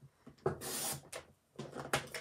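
Stampin' Up! paper trimmer's cutting head drawn down its track, slicing through a sheet of patterned card stock: one short scraping swish about half a second long, followed by softer handling scuffs of the paper.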